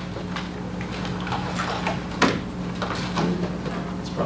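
Scattered light clicks and knocks of things being handled on a table, with one sharper knock about two seconds in, over a steady low room hum.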